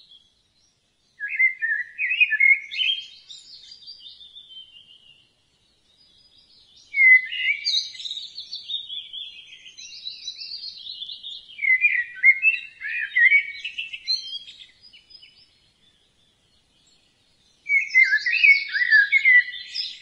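Birdsong: a songbird singing in bouts of rapid, jumping chirps and warbles, with short silent pauses between the bouts.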